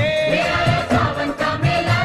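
Devi geet, a Hindu devotional song to the goddess, sung by voices in chorus over a steady drum beat.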